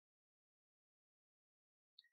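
Near silence, with no audible sound at all.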